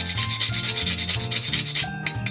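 Cinnamon stick grated on a fine rasp grater: rapid back-and-forth scraping strokes, about ten a second, that thin out near the end.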